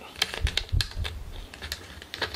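White plastic 70 mm film developing reel clicking as a strip of 116 roll film is wound into it by hand: a series of irregular light clicks, with some low rubbing from handling.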